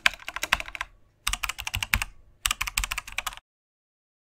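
Computer keyboard typing: three quick runs of key clicks, each about a second long, with short pauses between.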